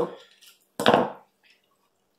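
Scissors cutting once through a plastic ketchup packet, about a second in, followed by faint handling of the packet.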